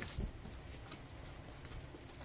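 Faint handling noise with a soft knock shortly after the start, as the rolled diamond painting canvas is taken up to be unrolled.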